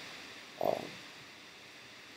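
A man's single short hesitation "um" about half a second in, otherwise faint steady room hiss.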